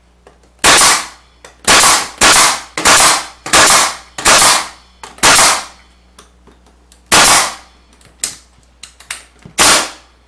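Pneumatic nailer firing nails through pine braces into a pine board: about nine sharp shots, coming roughly every half second to a second in the first half, then further apart. Fainter clicks fall between the later shots.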